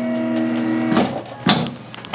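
Electric motor of a tilting chiropractic table running with a steady hum as the table moves, stopping about a second in; a sharp click follows.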